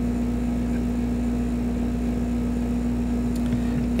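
Steady low hum with one constant tone held throughout, unchanging.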